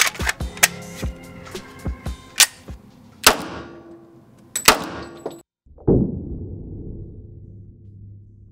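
Gunshots from a Glock pistol chambered in .50 GI, ringing in an indoor range: sharp cracks about three seconds in and near five seconds, then a deeper boom near six seconds that dies away over about two seconds. Background music with a beat plays under them.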